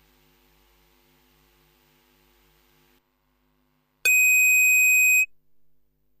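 A loud, steady buzzer tone, starting with a click about four seconds in and lasting just over a second. It is the starting-gate signal as the gates open and the horses break.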